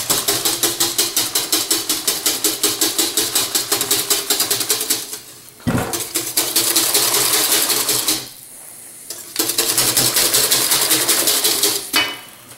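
Wire balloon whisk beating a thin custard batter in a copper bowl, the wires clicking against the metal at about five strokes a second. The beating breaks off briefly about five seconds in and again for a second or so around eight seconds in.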